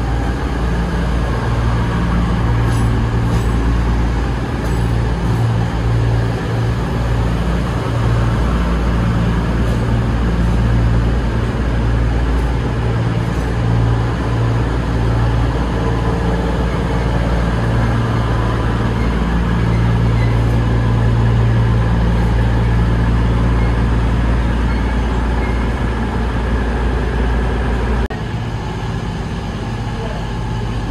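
Diesel train engine running steadily with a deep hum, dropping in level about two seconds before the end.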